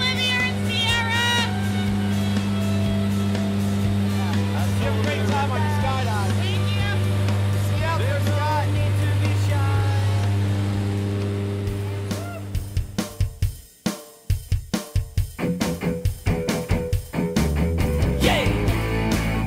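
Steady low drone of a jump plane's engine heard inside the cabin, with voices over it. The drone fades out about twelve to fourteen seconds in, and a rock music track with a steady drum beat starts.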